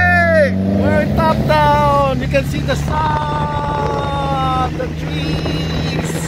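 The Datsun Fairlady roadster's rebuilt Nissan R16 engine runs with a steady drone. Over it, a high-pitched voice calls out in long, drawn-out notes: a falling call at the start, a few short calls, then one note held for nearly two seconds.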